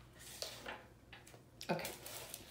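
Faint rustling and soft handling noises of a large diamond painting canvas being lifted and flipped over, with a couple of light taps.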